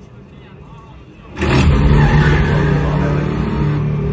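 Film soundtrack: a loud sound starts suddenly about a second and a half in and carries on as a noisy, steady low drone.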